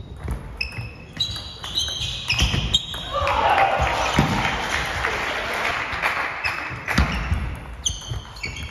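Table tennis balls clicking back and forth off bats and table in rallies, each hit with a short high ring, about two hits a second, echoing in a large hall. From about three seconds in, voices rise over the hits.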